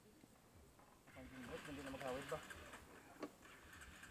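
Faint distant voices calling for about a second, with a single short click near the end; otherwise near silence.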